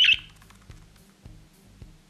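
A budgerigar gives one short, loud squawk right at the start, over quieter background music with a soft, regular ticking beat.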